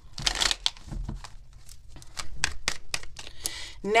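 A deck of tarot cards being shuffled by hand: a brief rustle of cards sliding, then a run of quick, light clicks as the cards slap together.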